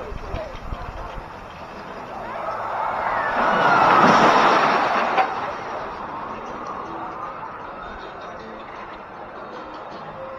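A roller coaster train rushing past, its noise building for about a second and a half, peaking about four seconds in and fading over the next two seconds.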